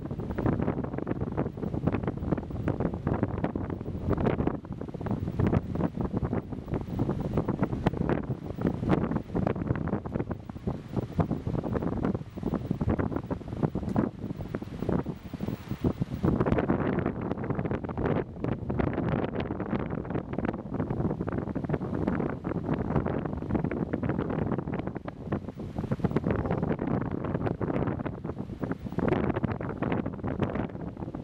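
Wind buffeting the microphone in uneven gusts, with small waves washing onto the shore.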